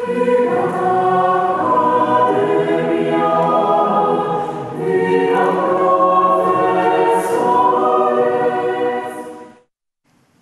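Mixed choir singing in sustained chords, with a short break between phrases about halfway through; the singing cuts off suddenly about half a second before the end.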